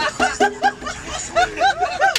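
Men laughing: two runs of quick, rhythmic 'ha' bursts, one early and one in the second half.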